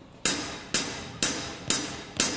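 Drummer's count-in: four stick strikes on a cymbal, evenly spaced about two a second, each ringing briefly before the next.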